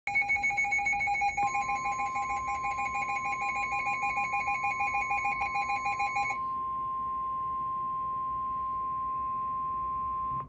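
A NOAA weather alert radio sounding a rapid two-tone warbling alarm. About a second in it is joined by the steady 1050 Hz NOAA Weather Radio warning tone. The warble stops about six seconds in, leaving the single steady tone, which signals that a warning broadcast is about to follow.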